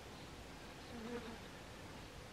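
Brief wing buzz of a male dubia roach (Blaptica dubia) fluttering as it struggles in a wasp spider's grip, about a second in and lasting about half a second.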